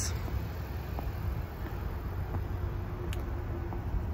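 Steady low rumble of outdoor background noise, with a faint hum in the second half and a single short click about three seconds in.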